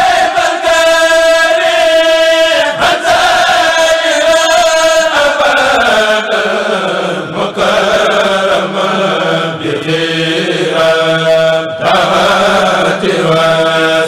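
Kurel of male voices chanting a Mouride khassida together through microphones, in long held notes. About halfway through, the melody falls in a long slide and settles on a lower held pitch.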